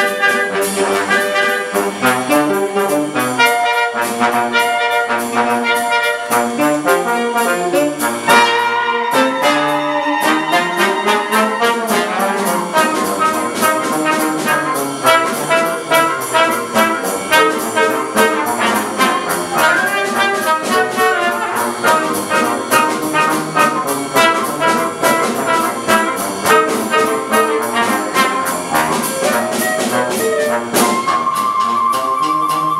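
Live small wind ensemble of flute, clarinet, saxophone and trumpet playing a jazz tune together, with a steady beat kept underneath.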